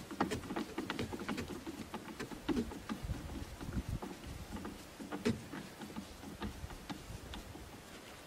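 Hand screwdriver backing a large screw out of a wooden board: scattered small clicks and short creaks of the screw turning in the wood.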